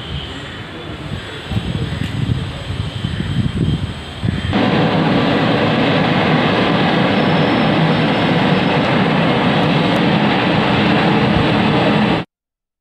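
A loud, steady rushing noise that builds over the first few seconds, jumps louder about four and a half seconds in, and cuts off abruptly at the end.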